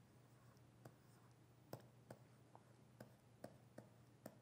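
Near silence with about seven faint, irregular taps of a stylus on a writing tablet as digits are written by hand.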